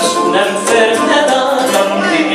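A man singing a carnival song into a microphone, with musical accompaniment.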